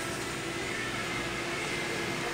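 Steady indoor background hum and hiss with a faint steady tone, the room noise of a store's ventilation.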